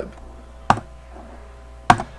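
Two sharp clicks about a second apart, from working a computer's keyboard and mouse, over a faint steady low hum.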